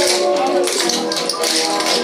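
Many tap shoes striking a wooden floor together, with rhythmic clicks several times a second, over swing music.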